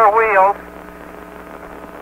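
A man's voice over the Apollo radio link, cut off sharply in the highs, ends about half a second in. It leaves only a steady faint hiss and hum on the open channel. The rover itself makes no sound in the airless vacuum.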